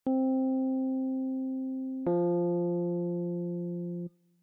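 Two piano-like keyboard notes played one after the other, each held about two seconds and fading, the second lower than the first: a melodic interval played as an ear-training test question.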